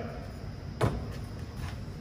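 A single sharp knock from the loosened plastic liftgate trim panel being handled, about a second in, followed by a few faint ticks, over steady workshop background noise.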